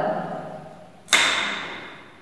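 A single sharp clack about a second in, as a bead on a large demonstration abacus is pushed into place to set the number one. The clack dies away over about a second.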